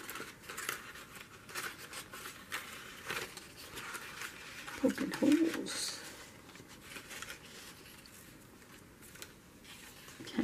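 Paper handling: a paper cut-out being slid and pressed into slits in a photo page, with light rustles and small taps of fingers on paper. A brief voiced murmur comes about five seconds in.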